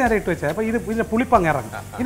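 A man talking over the sizzle of hot oil with dried red chillies and curry leaves in a clay cooking pot.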